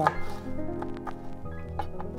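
Chef's knife chopping strips of green bell pepper against a plastic cutting board: a few separate knife strikes, over background music.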